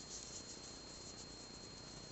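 Quiet room tone: a faint steady hiss with a thin, constant high-pitched whine, and no distinct sounds.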